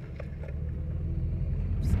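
Low, steady rumble of a car's engine and tyres heard from inside the cabin while driving slowly, growing slightly louder toward the end.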